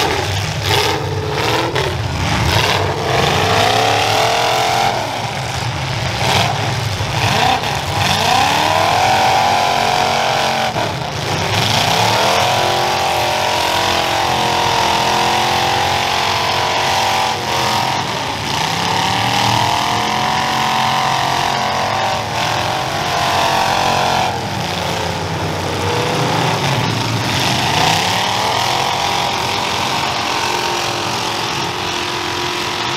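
Several full-size demolition derby cars' engines revving hard and unevenly, their pitch climbing and falling over and over as the cars back up and charge. Sudden crunching hits of metal on metal come as the cars ram each other, several close together early on and more later.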